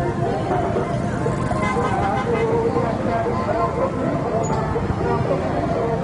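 Steady noise of heavy street traffic, mostly motorbike engines, mixed with a babble of many voices.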